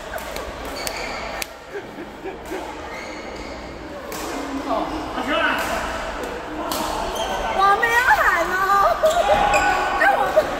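Voices talking and calling in a large echoing badminton hall, over scattered sharp clicks and squeaks from rackets, shuttlecocks and shoes on nearby courts. The voices grow louder in the second half.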